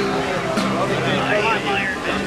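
Acoustic guitar being strummed, with a man's voice over it.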